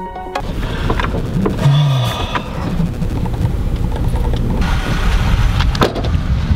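Background electronic music cuts off just after the start, leaving the steady rumble of road and wind noise in a moving car. A few sharp knocks and a brief low hum come through near two seconds in.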